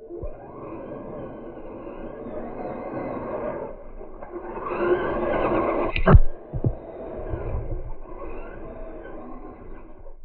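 Slowed-down sound of an electric RC rock crawler, a custom Axial Wraith, churning through mud, its motor and splashing dragged low in pitch. It swells louder about five seconds in, with a sharp knock at about six seconds.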